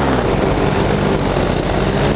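Air Conception Nitro 200 paramotor engine, a single-cylinder two-stroke, running steadily in flight with its propeller, with wind noise over the microphone.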